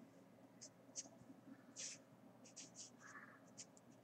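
Felt-tip marker writing on paper: a run of short, faint scratching strokes, the strongest about one and two seconds in.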